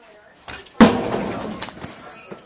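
A loud bang about a second in as a body is slammed against metal hallway lockers, with noise trailing off over the next second.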